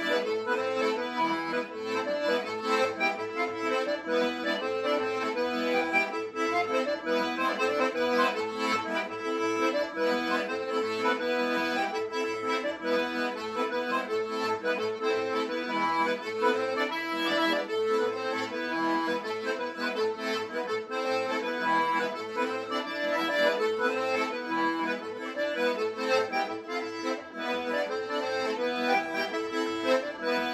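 Diatonic button accordion (a Castagnari organetto) playing a lively tarantella-style folk tune: held melody notes over an evenly pulsing bass accompaniment, with no breaks.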